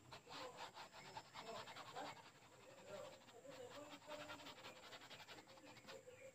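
Faint, rapid dabbing of crumpled tissue against a stretched canvas while painting in clouds: a quick run of soft taps.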